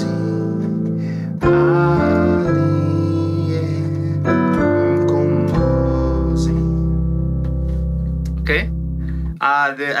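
Keyboard playing slow, sustained chords of a hymn accompaniment, changing every second or so, then ending on a C major chord with a deep bass note held for about four seconds before it stops. A man's voice starts talking just at the end.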